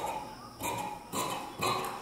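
Tailoring scissors cutting through blouse fabric along a chalk line, four snips about half a second apart.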